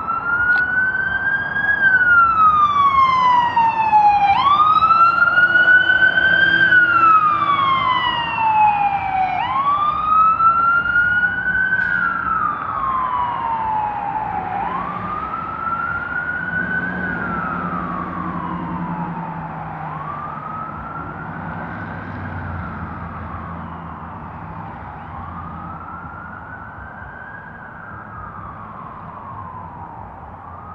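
Emergency vehicle siren on a slow wail: each cycle rises quickly and then falls slowly, repeating about every five seconds, growing gradually fainter.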